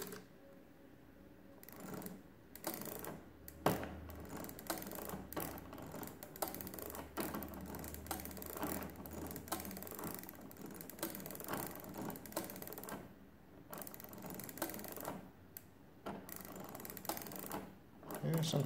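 Setting sliders of a de Colmar arithmometer being pushed along their brass slots, giving a run of small, irregular metallic clicks as each slider steps through its positions. The sliders are being set to 9 to check that they run without too much drag.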